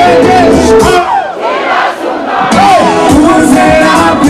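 Live concert music over a PA with a large crowd singing and shouting along. The bass and beat drop out for about a second and a half in the middle, leaving the voices, then come back in.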